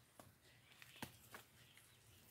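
Near silence: faint outdoor room tone with a few soft clicks, the clearest about a second in.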